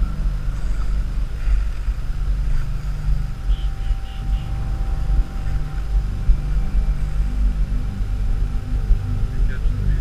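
Wind buffeting the microphone in a low, uneven rumble, under background music.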